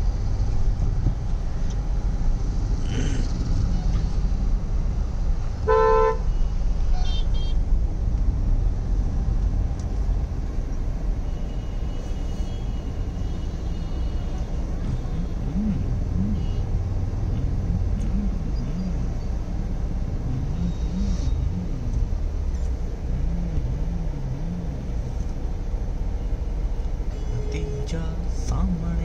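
Busy city road traffic: a steady low rumble of idling and passing engines, with one short, loud car horn honk about six seconds in and a few fainter horns elsewhere.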